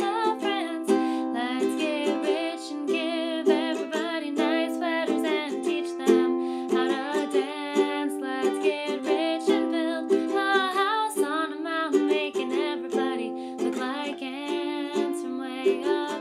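Ukulele strummed in steady chords while a woman sings along, her voice wavering in pitch above the strings.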